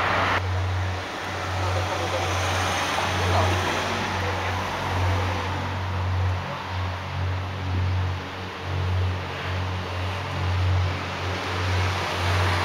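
Wind buffeting the camera microphone: a low rumble that swells and drops in irregular gusts over a steady hiss.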